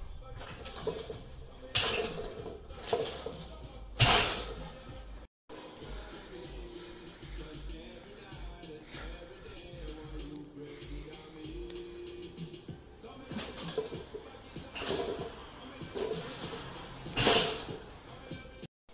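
Barbell loaded with bumper plates coming down on the rubber gym floor between banded sumo deadlift pulls: sharp thuds and clanks about two, three and four seconds in, the loudest at four, and another run of them in the last few seconds. Background music plays under them.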